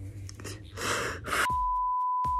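A woman crying: two sharp, sobbing breaths, then a steady electronic beep that starts about a second and a half in and holds as one unchanging tone.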